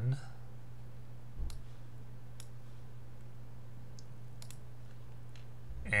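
Computer mouse clicking: a handful of sharp, separate clicks, irregularly spaced about a second apart, over a steady low hum.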